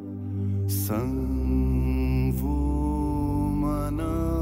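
Devotional background music: a steady low drone under long held notes, swelling back in just after the start.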